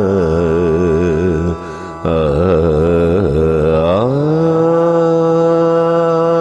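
Closing notes of a Tamil Christian devotional song: a male voice holds long vowels with a wide vibrato and breaks off briefly about a second and a half in. About four seconds in it glides up into one long steady note.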